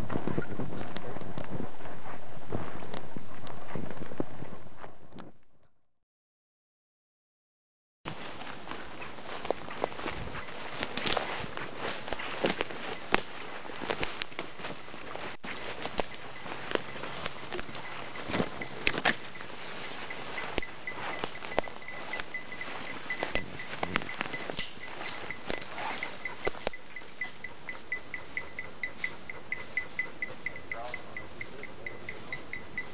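Footsteps crunching through dry leaf litter, fading out within about five seconds into a short silence. Then footsteps and rustling through ferns and brush, with irregular twig snaps. In the second half a faint, evenly spaced, high ringing tick joins in.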